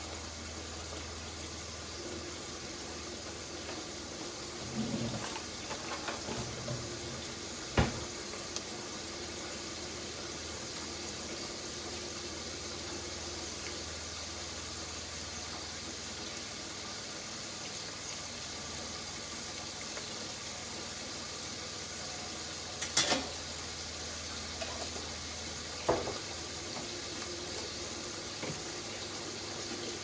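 A steady watery hiss, with a few sharp clicks and knocks and some soft thuds. A low hum underneath fades out about halfway.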